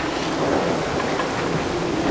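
Wind buffeting the microphone over water rushing past the hull of a sailing yacht under sail in gusty weather: a steady, even rushing noise.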